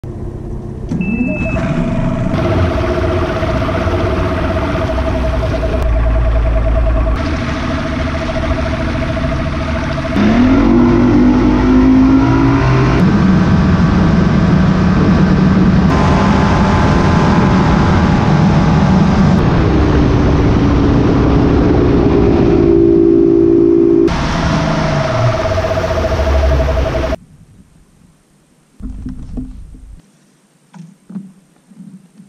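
Bass boat's outboard motor running under way, its pitch climbing as the boat speeds up, with rushing wind noise over it. Near the end the motor sound drops away abruptly.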